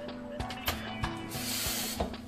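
Kitchen faucet running, water splashing into a glass in the sink as a steady hiss over the last half-second or so. A few light clicks come before it.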